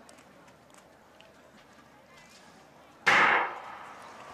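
Starter's gun fired once about three seconds in to start a men's 800 m race, a sharp crack that dies away over about half a second. Before it, a quiet stadium background.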